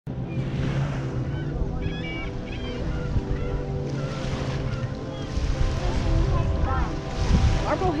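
Wind buffeting the microphone on a lake shore, over a steady low hum, with faint distant voices of people now and then.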